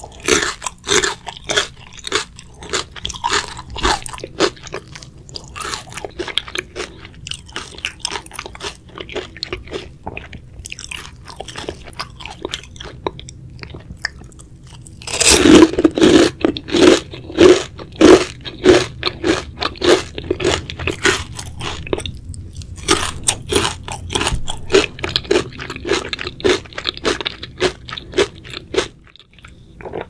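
Close-miked chewing of crunchy Korean fried chicken, with quieter crackly chewing through the first half. About halfway in comes a loud crunching bite, then rapid, loud crunchy chewing that stops shortly before the end.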